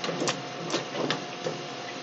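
A saucepan of baby carrots boiling on the stove: a steady hiss of boiling water with a few light clicks.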